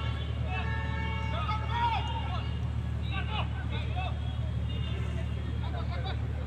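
Scattered voices calling out across a football pitch during play, over a steady low hum.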